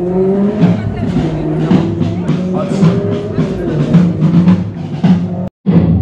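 Music played by an approaching procession in folk costume: drumbeats under a held drone, with a melody above it. The sound cuts out briefly about five and a half seconds in.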